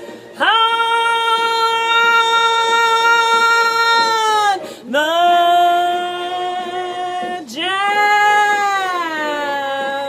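A woman singing three long held notes in a row, each lasting two seconds or more, the last one sliding down in pitch near the end.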